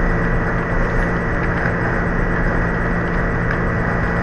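Steady background drone with a low, even hum and hiss.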